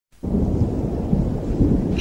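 A low, steady rumbling noise with most of its weight in the bass, starting a moment in.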